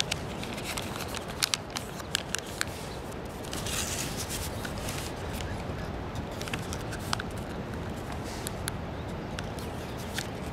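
Sheet of kami origami paper crinkling and clicking as it is folded and pressed into creases by hand, with scattered small crackles and a longer rustle about four seconds in, over a steady background hiss.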